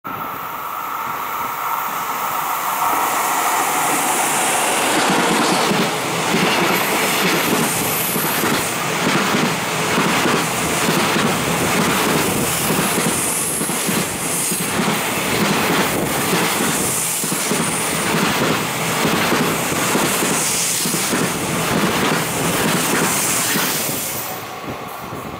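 Container freight train passing close by at speed: a steady rumble with the wagons' wheels clattering rhythmically over the rail joints. The noise drops away at the very end as the last wagon clears.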